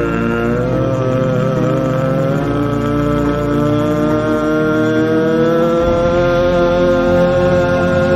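Instrumental backing track of a slow ballad playing between sung lines: long held synthesized, organ-like notes with a slow melody.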